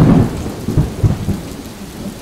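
Thunder rumbling over steady rain in a thunderstorm. The rumble is loudest at the start and dies down through the rest.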